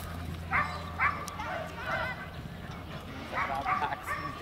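A dog barking a few short times during a fast agility run, mixed with a person's calls.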